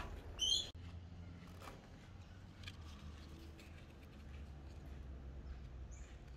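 A short, high, warbling bird call about half a second in, cut off abruptly. After it comes faint outdoor quiet with a low steady rumble and a few faint ticks.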